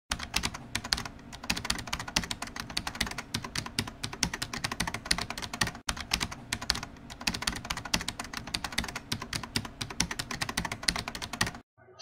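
Typing on a computer keyboard: a fast, irregular run of key clicks with a brief break about halfway, stopping suddenly just before the end.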